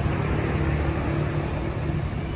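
Daewoo Magnus engine idling steadily with an even low hum, running very smoothly.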